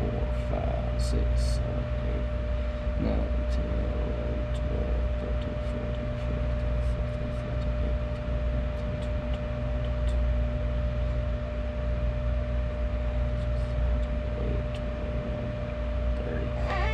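A steady electrical hum with a constant mid-pitched tone, with a few faint ticks.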